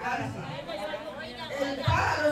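Several voices talking over one another in a large room: people chatting.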